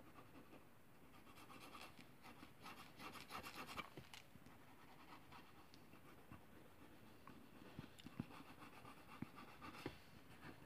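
Faint scratching of a mechanical pencil on paper: a run of quick sketching strokes about two to four seconds in, then a few light ticks near the end.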